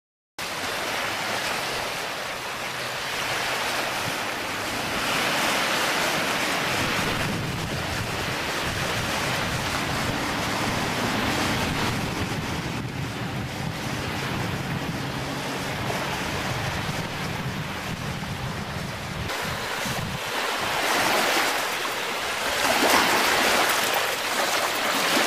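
Steady rushing of wind on the microphone over small waves washing on a lakeshore.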